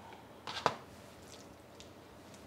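A single light knock about half a second in, as something is set down or picked up on a wooden worktop during raw chicken preparation, in otherwise quiet room tone.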